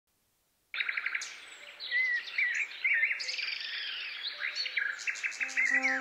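Birds singing, a dense mix of chirps, trills and rising and falling whistles, starting abruptly after a brief silence. Near the end, steady low sustained notes from an instrument enter beneath the birdsong as the music begins.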